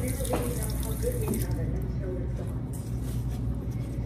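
Water running from a faucet onto a toothbrush and into a sink, a steady splashing hiss that fades after about three seconds.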